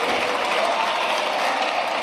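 Deputies in a parliamentary chamber applauding: a steady, dense round of clapping.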